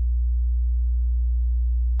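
A steady, low sine-wave tone at about 60 Hz, made by the Thor synthesizer's filter self-oscillating with its resonance turned all the way up.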